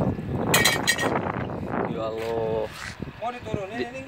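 Mostly people talking, with a few brief sharp clinks about half a second to a second in.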